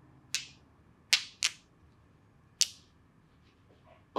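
A masseuse's fingers snapping four times during a head massage, sharp and short, with two snaps in quick succession about a second in.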